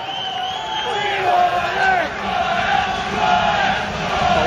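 Football crowd chanting together in the stand, many voices singing and shouting long held notes.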